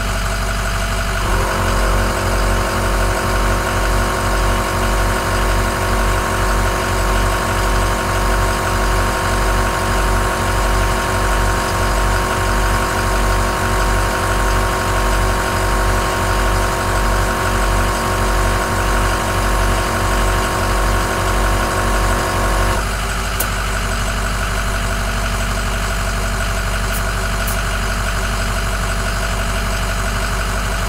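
Smittybilt 2781 12-volt single-piston air compressor running as it inflates a Ford F-350's dually tire to about 80 psi, over the truck's engine idling. About a second in the sound turns into a steadier hum with a slow, even pulsing, which drops away about 23 seconds in, followed by a few faint clicks.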